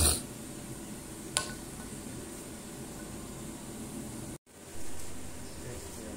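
Low steady background noise with a single light click about a second and a half in, then a brief dropout and a short swell of noise.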